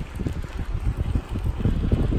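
Wind buffeting a fast-moving microphone, a rough, gusty low rumble that grows louder.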